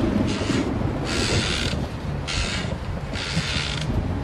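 Horror soundtrack passage: a low, dark drone under a rhythmic rasping, scraping noise that comes about once a second, like a mechanism creaking.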